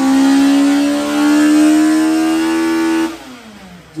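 Car engine revving, its note climbing slowly and held loud, then backing off about three seconds in as the pitch falls away.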